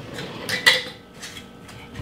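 A large glass jar of salt being handled and set down, with two sharp glass clinks about half a second in.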